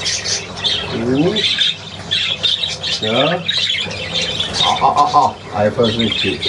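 A room of budgerigars chattering and squawking without a break, with one louder squawk about five seconds in.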